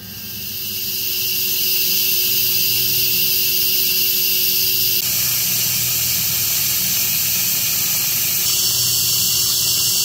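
A loud, steady, high hiss that builds over the first couple of seconds and then holds evenly, with a faint low hum underneath.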